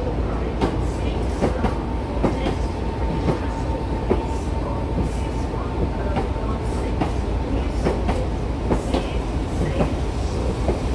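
Southeastern electric multiple unit rolling slowly along a station platform, its wheels clicking irregularly over rail joints over a steady low rumble. A faint steady whine runs through the middle few seconds.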